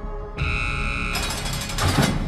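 Trailer sound effects over a fading music drone. A sudden hiss comes in about half a second in, then a rapid mechanical ratcheting clatter that builds to a hit near the end.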